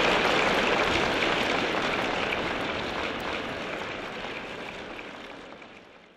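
Concert hall audience applauding, fading out steadily over the whole stretch.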